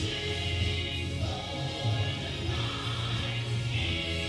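Christian worship music: a group of voices singing a sustained song over steady instrumental accompaniment with a strong bass.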